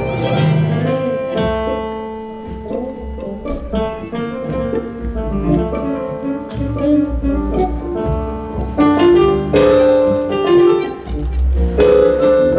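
Live tango quintet playing: double bass, violin, bandoneon and electric guitar together, softer in the middle, with the bass coming back strongly near the end.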